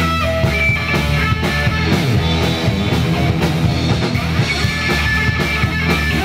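Live rock band playing an instrumental passage: electric guitar and electric bass guitar over drums, without vocals.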